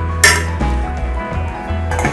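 Steel ladle clinking once against a steel vessel about a quarter second in, over steady background music.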